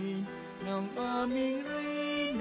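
A church hymn: voices sing long held notes that move in steps and slides, with instrumental accompaniment.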